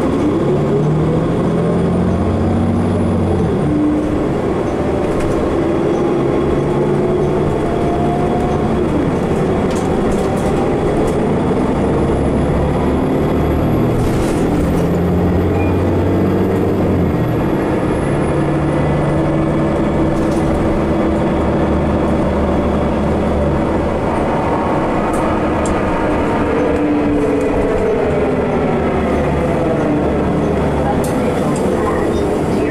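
Interior ride noise of a 2015 Nova Bus LFS city bus under way: the engine and transmission climb in pitch through the gears as it pulls away, over a steady rumble of road and body noise. A faint high whine rises and then falls in the middle.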